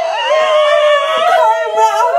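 A woman's long, high-pitched wailing cry of surprise and emotion, held on one wavering note, with a second higher voice joining about a second and a half in.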